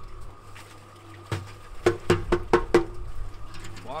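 Metal bucket knocked five times in quick succession against the rim of a cement mixer's drum to shake the last sand out, each knock ringing at the same pitch, after a softer single knock. A steady low hum runs underneath.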